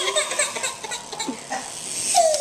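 A baby crying in fright in short sobbing bursts, easing off in the middle before the wail resumes. Light clicking comes from a small battery-powered toy dog moving on the floor.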